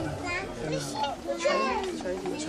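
Children's voices chattering and calling out in the room.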